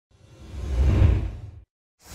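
Swoosh sound effect for a logo intro, a rushing noise over a deep rumble that swells up to a peak about a second in, fades, then cuts off suddenly.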